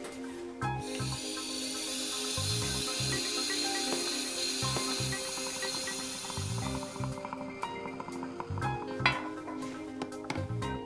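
A steady hiss of steam let into the line through the opened isolation valves, starting about a second in and stopping a few seconds before the end, over background music.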